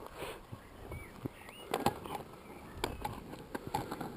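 Inline skates on an asphalt path: scattered sharp clicks and knocks from the wheels and boots over faint rolling noise as a beginner gets up and starts to skate.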